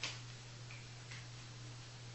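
A sharp click at the start and a fainter tick about a second later, over a steady low hum.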